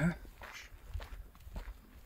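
A few footsteps on dry, grassy mountain ground, with a low rumble on the microphone.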